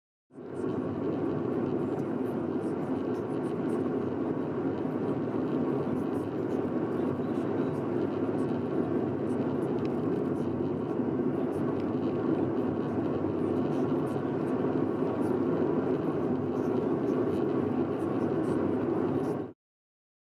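Steady engine and tyre noise of a car driving at road speed, heard inside the cabin as a low, even drone. It starts suddenly just after the beginning and cuts off suddenly near the end.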